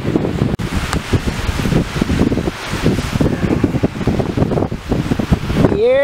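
Wind buffeting the microphone, an uneven gusty rumble with constant flutter.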